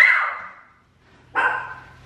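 Large dog barking twice, the second bark about a second and a half after the first, each bark dying away quickly.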